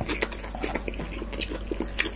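Close-miked chewing: a string of small, irregular wet clicks and lip smacks from people eating.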